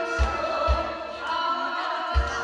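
Male singer singing a trot song live into a handheld microphone over a recorded backing track, with deep kick-drum beats about half a second apart.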